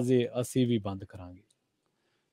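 A man speaking over a remote-interview link; his words trail off a little past halfway, followed by silence.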